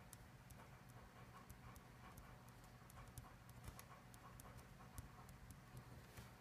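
Faint pen writing on paper: a run of soft, irregular ticks and scratches from the pen strokes, over a low steady hum.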